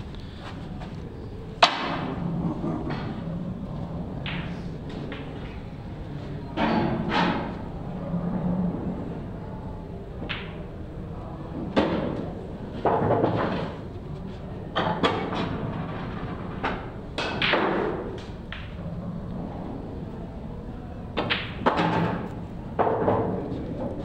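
Pool balls clicking and knocking as a shot is played and a red ball is potted on an English eight-ball table. The knocks come scattered and short, the sharpest about a second and a half in, over a low, steady hall background.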